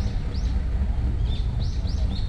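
A bird calling with repeated short chirps, about two a second, turning to more varied calls in the second half, over a steady low rumble.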